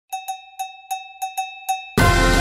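Seven quick strikes of one bell-like chime note in an uneven rhythm, each ringing briefly, opening an intro jingle. Full music comes in right at the end.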